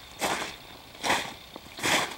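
Footsteps crunching in snow: three steps at a walking pace.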